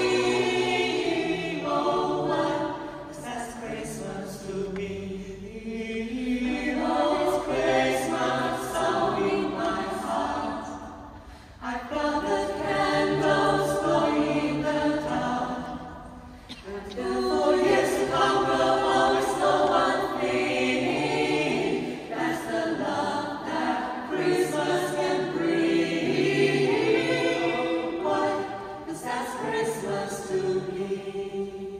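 A mixed-voice choir singing unaccompanied, holding sustained chords in long phrases, with two short breaks about 11 and 16 seconds in.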